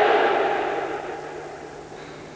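The echo of a loud shout dying away in a large hall, fading over about a second into quiet room noise with a steady low hum.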